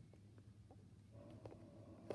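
Near silence: room tone with a low hum, a few faint ticks, and a faint steady tone that starts a little after a second in.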